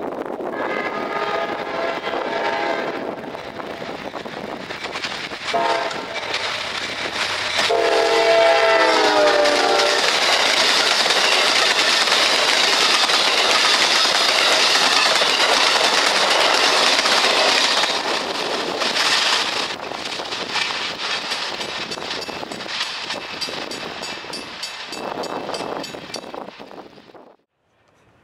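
Amtrak passenger train approaching and passing at speed: its locomotive horn sounds several blasts, a long one, a short one, then a longer one that falls in pitch as the locomotive goes by. The cars follow with a loud rush of wheel and rail noise and clickety-clack, fading away toward the end.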